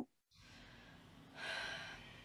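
A mezzo-soprano's audible intake of breath, about half a second long, coming about one and a half seconds in after near silence: the breath taken just before she sings her first phrase.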